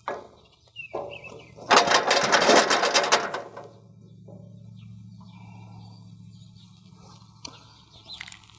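Steel cattle squeeze chute rattling and clanking for about a second and a half as a calf shifts in it while being injected, followed by a low steady hum.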